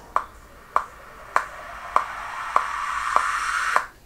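A Logic Pro X metronome clicks steadily, a little under two clicks a second. From about a second in, a swish (a rising whoosh effect for a song's build-up intro) swells louder and then cuts off suddenly just before the end.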